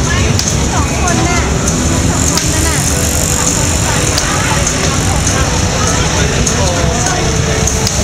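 Street traffic of motorbikes and cars passing with a steady low rumble, under people's chatter, with scattered sharp firecracker pops every second or two.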